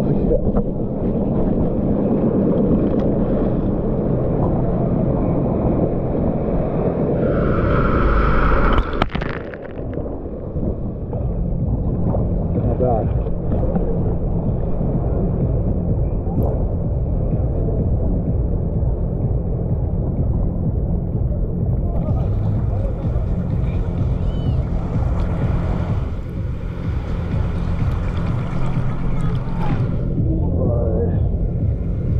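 Seawater sloshing and churning around a waterproofed GoPro action camera held at the ocean surface, with the deep, muffled rumble of small surf. The level dips briefly about nine seconds in, then the sloshing carries on.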